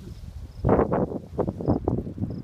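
Footsteps on a sandy dune path, with scrub brushing and rustling against the walker: a run of irregular soft strikes, densest in the second half.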